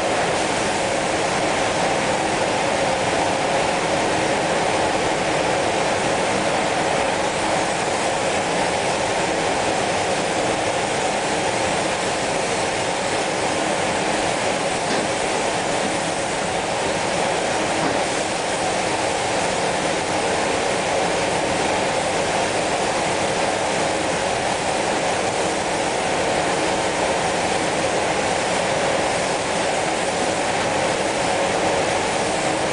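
Compressed-air spray guns and spray-booth equipment running in a spray-chrome booth: a steady rushing noise with a low hum underneath, unchanging throughout.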